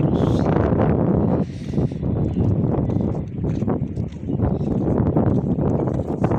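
Sea wind buffeting a phone's microphone in a loud, gusting rumble that eases briefly about a second and a half in.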